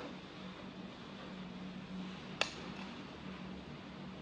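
A metal spoon clinks once against a ceramic plate about two and a half seconds in, over a steady low hum.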